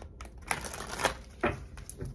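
A deck of tarot cards being handled and shuffled, with several sharp card clicks and slaps about twice a second over a light rustle.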